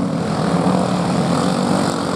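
Racing engines running in a steady drone with a low hum, cars waiting before the start of the heat.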